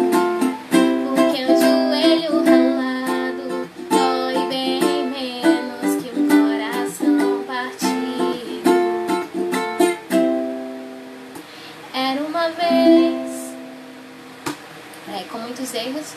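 Ukulele strummed in chords with a woman singing along. The song ends about ten seconds in, a last chord ringing out, with a few more strummed notes shortly after.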